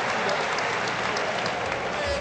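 A large crowd applauding steadily, a dense, even patter of many hands clapping at once.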